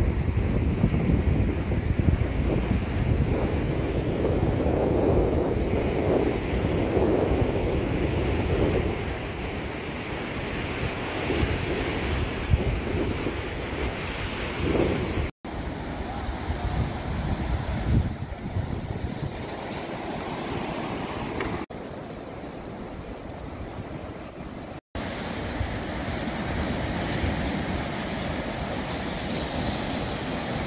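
Sea waves breaking and washing over a rocky shore, with wind buffeting the microphone. The sound drops out for an instant twice, at about 15 and 25 seconds in, where shots are cut together.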